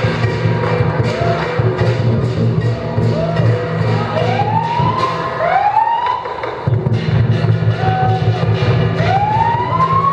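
Chinese lion dance percussion: a drum beaten continuously under repeated cymbal clashes, the drum stopping for a moment about six seconds in. Several pitched glides rise and then sag over it, each lasting under a second.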